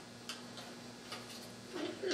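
Quiet room tone in a meeting hall: a steady low electrical hum with a few faint, scattered clicks. A voice starts up near the end.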